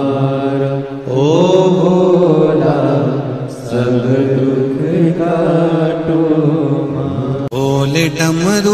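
Hindi devotional bhajan to Shiva: a voice holding long sung notes that glide up and down over a steady drone. The song cuts off suddenly about seven and a half seconds in, and the next bhajan starts.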